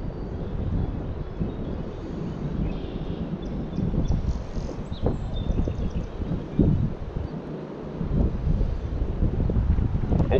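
Wind buffeting the microphone: an uneven low rumble that eases briefly past the middle.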